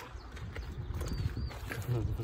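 Faint footsteps of people walking on a path, a few soft knocks in the second half, over a low rumble of wind and handling on the phone microphone.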